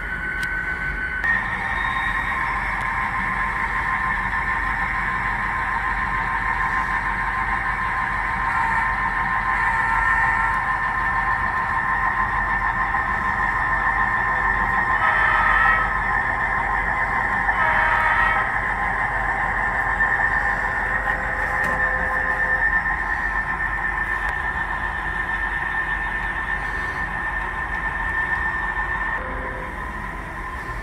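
The onboard sound of HO scale EMD diesel locomotives (Scaletrains SD40-2s and an SD45) coming from small speakers: a steady engine drone as the train pulls away on a green signal. There are two brief louder moments about halfway through.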